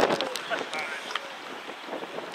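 Wind noise on the microphone, with faint, distant shouts from players and a few small clicks near the start.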